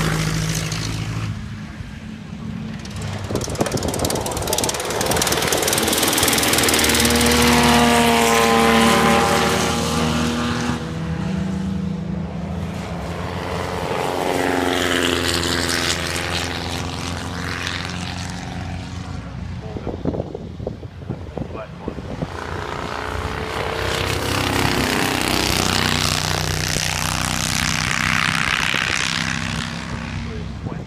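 Vintage racing cars passing one after another on a circuit. Each engine grows louder as it approaches and drops in pitch as it goes by. The loudest passes come about a quarter of the way in, again near the middle, and once more near the end.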